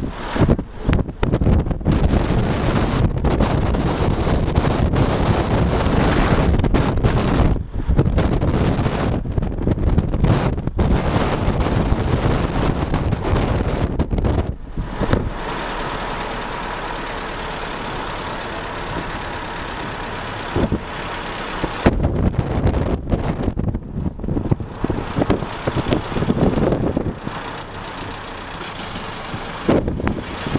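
Car driving slowly: engine and road noise heard from inside the car, rough and steady with brief dropouts, settling quieter in the middle stretch.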